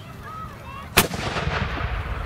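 Muzzle-loading field cannon firing a black-powder charge: one sharp shot about a second in, followed by a long echo that fades away slowly.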